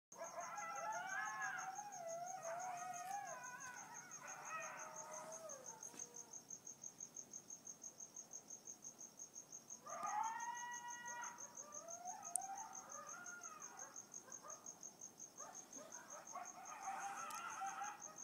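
Coyotes howling and yipping in wavering calls that slide up and down in pitch. The calls come in three bouts: at the start, again about ten seconds in, and near the end.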